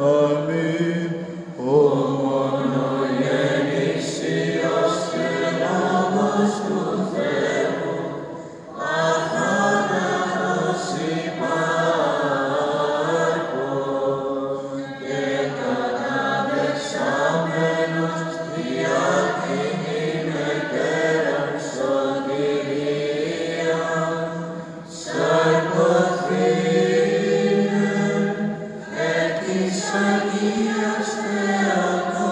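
Byzantine chant from male cantors: a melodic line sung in Greek over a steady held low drone (the ison), with short breaks between phrases about a third of the way in and again near the end.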